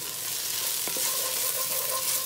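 Diced brown onions sizzling in olive oil in a heavy-based enamelled pot, stirred with a wooden spoon: a steady frying hiss with a faint tick of the spoon about a second in. The onions are in the early softening stage, not yet browning.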